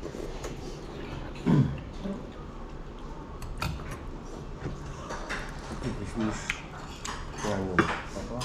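Metal spoons and chopsticks clinking and scraping against earthenware pots and small dishes during a meal, in scattered light clicks.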